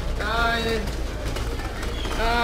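A person's drawn-out vocal call, one sustained note of about half a second shortly after the start, over a steady low hum.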